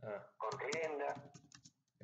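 Computer keyboard typing: a run of quick clicks from about half a second in, over a voice speaking.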